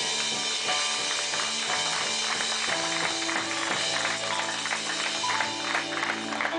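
Live band music with a guitar, held chords and a steady run of quick percussion strikes.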